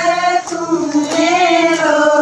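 Women singing a Haryanvi devotional bhajan together, one melodic line in unison with long held, slowly bending notes.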